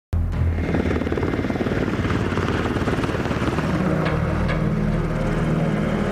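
A formation of UH-60 Black Hawk helicopters flying over, their rotors chopping rapidly and steadily. The sound cuts in abruptly at the start, and a steady low hum joins it about halfway through.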